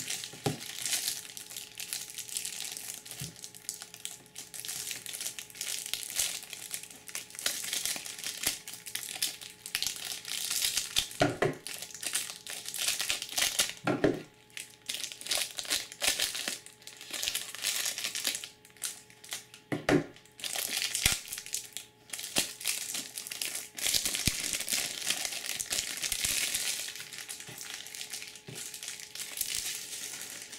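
Clear plastic shrink-wrap crinkling and crackling continuously as it is peeled and crumpled off a stack of trading cards, with a few duller knocks of the handling in between.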